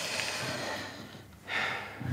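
A woman breathing sharply in pain, two audible breaths, the second shorter, as her bruised shoulder is pressed during examination.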